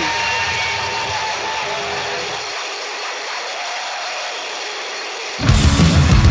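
Hardcore punk recording at a change of songs: the band drops out and a wash of noise rings on with no bass or drums, then the next song comes in suddenly with the full band about five seconds in.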